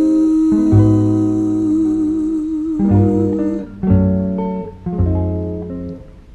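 Recorded jazz ballad accompaniment: guitar chords struck one after another, each with a low bass note, under a long held note that wavers and stops a little past halfway.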